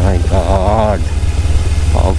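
Kawasaki Ninja 300 parallel-twin engine running at low speed while the bike is ridden over a rough, rocky dirt track, giving a heavy, steady low rumble. In the first second a drawn-out, wavering voice sounds over it.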